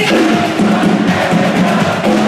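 Live worship band playing an upbeat song, with drum kit and a line of percussion drums keeping the beat under keyboard and guitars.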